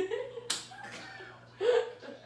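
A single sharp hand slap about half a second in: a high five between two people, with laughter around it.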